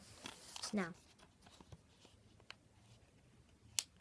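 Sheets of paper and a plastic DVD case being handled: a rustle of paper in the first second, then a few separate small clicks.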